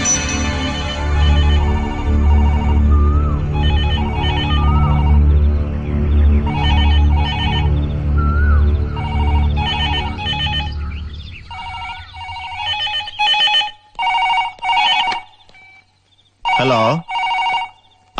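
A telephone ringing in repeated double rings of an electronic trill. For the first two-thirds it sounds over background music with a heavy drum beat; the music fades out and the rings continue alone near the end.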